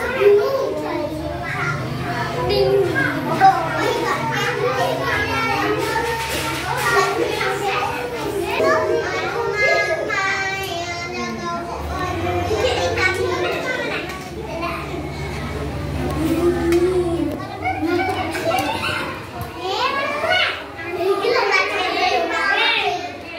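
Young children's voices chattering and calling out over one another in a room, with a steady low hum underneath.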